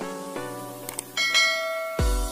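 Intro jingle of ringing, bell-like notes. About a second in, a faint click is followed by a bright sustained chime: a subscribe-and-notification-bell sound effect.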